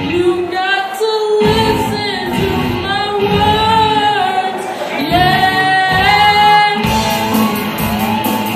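Live rock band with a lead singer carrying a held, bending melody over keyboard and guitars. The low end of the band drops out briefly twice, about a second in and again shortly before the end, then the full band with electric guitar comes back in.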